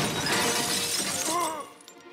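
Cartoon sound effect of glass Christmas tree baubles shattering as the decorated tree crashes to the floor. A dense burst of breaking and tinkling glass dies away about a second and a half in.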